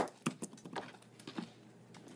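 A few light knocks and clicks from a chef knife and a cut strip of watermelon rind on a cutting board as the rind is trimmed off, a sharp click first and then fainter taps between quiet stretches.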